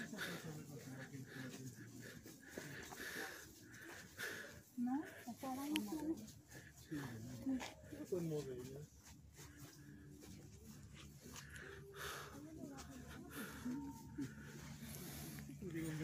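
Faint, indistinct voices of a group of people talking and calling out in short bursts, with no clear words, over a low steady background hum.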